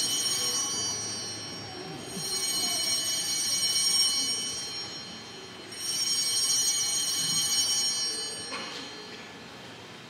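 Altar bells rung at the elevation of the chalice during the consecration. There are three rings of bright, high, shimmering tones: the first is already sounding, the next two start about two and six seconds in, and each lasts a couple of seconds before fading.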